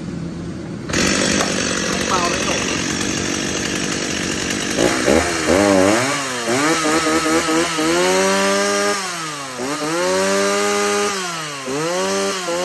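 Stihl 024 two-stroke chainsaw, fitted with a decompression valve, running. From about five seconds in it is revved up and down several times, the pitch rising and falling with each blip of the throttle.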